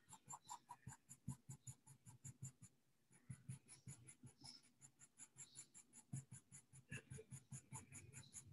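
Faint scratching of a white pencil on tan sketchbook paper: quick short strokes, about four or five a second, with a brief pause about three seconds in.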